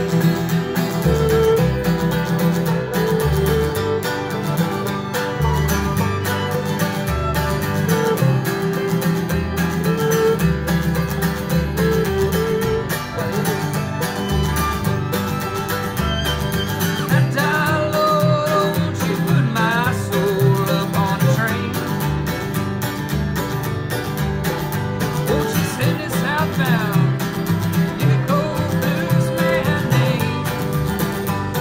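Acoustic bluegrass string band playing a tune: fiddle over strummed acoustic guitar and a low string bass, running steadily.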